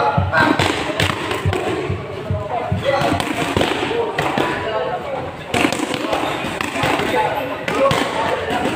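Boxing gloves smacking focus mitts in a string of punches, many sharp thuds at an uneven pace, with voices in the background.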